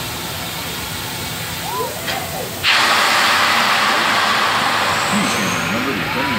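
A loud, steady hiss of rushing air starts abruptly about two and a half seconds in, from the drop tower ride's compressed-air system, while its ride vehicle holds at the top of the tower. People's voices are heard briefly before it and again near the end.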